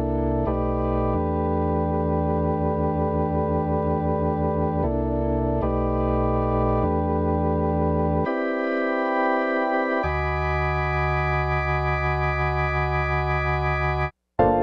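A Waves CR8 sampler patch played from drum-machine pads: a series of held chords, each changing to the next every second or two.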